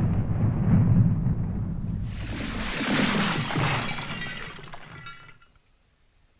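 Film sound effect: a deep rumble dies away, then a bright shattering crash with faint ringing, tinkling debris rises about two seconds in and fades out over the next three seconds.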